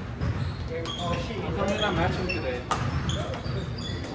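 Badminton rally in a large gym hall: a few sharp racket hits on a shuttlecock, roughly a second apart, with voices and low hall noise around them.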